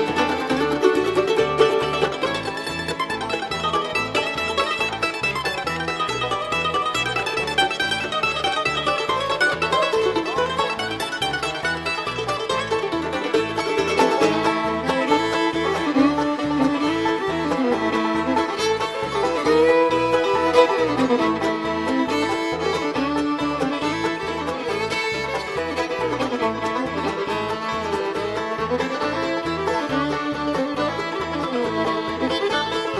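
Bluegrass string band playing an instrumental passage with a steady rhythm: mandolin picking over guitar, with the fiddle coming forward near the end.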